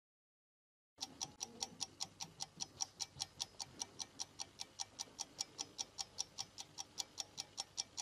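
Clock-ticking sound effect for a countdown timer: quick, even ticks, about five a second, starting about a second in.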